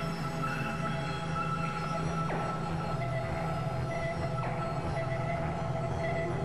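Experimental electronic synthesizer drone: a dense, steady bed of sustained tones over a low hum, crossed by a couple of brief falling sweeps.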